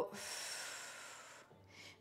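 A woman's deliberate deep exhale, breathing out audibly in one long breath that fades away over about a second and a half.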